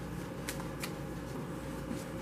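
Tarot cards being handled and shuffled in the hand, giving two sharp card clicks about a third of a second apart over a low steady room hum.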